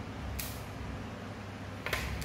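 A knife slicing through a papaya half, two short scraping strokes about a second and a half apart, over a steady low hum.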